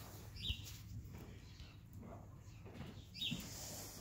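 A small bird chirps twice, two short high falling notes about three seconds apart, over a low steady hum.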